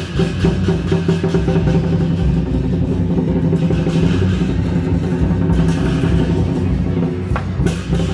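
Lion dance percussion ensemble playing: a large drum beaten in a fast, steady rhythm with clashing cymbals, the cymbals dropping back briefly and crashing in again near the end.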